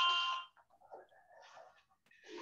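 Electronic ringing alert tone, several steady pitches pulsing rapidly, that cuts off suddenly about half a second in; after it only faint, scattered sounds remain.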